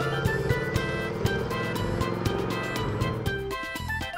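Background music with a steady beat, with a cartoon off-road car's engine running as it drives by.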